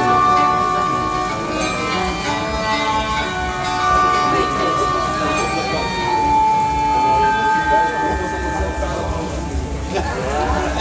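Belly-dance music playing, a melody of long held notes, with people's voices over it.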